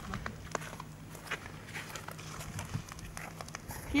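Faint footsteps with scattered light clicks and knocks over a low steady background hum.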